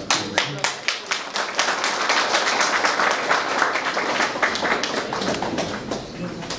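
Audience applauding: separate claps at first, quickly building into steady applause, then thinning out near the end.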